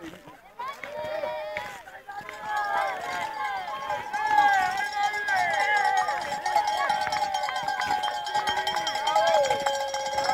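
Spectators cheering and shouting encouragement at passing ski-mountaineering racers, many voices overlapping, with cowbells ringing. The shouting swells about two seconds in and stays loud.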